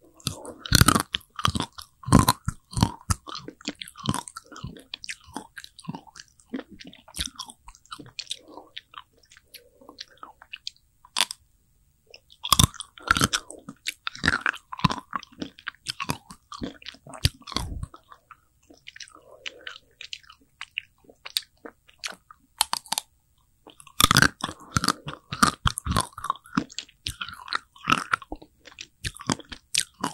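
Close-miked biting and crunching of a chocolate-coated Okdongja ice cream bar, the hard chocolate layer snapping between the teeth, then chewing. It comes in three bouts of crisp crunches with quieter pauses between.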